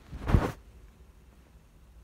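A single short rustling burst, like a bump or brush against the microphone, about a third of a second in, then faint room tone.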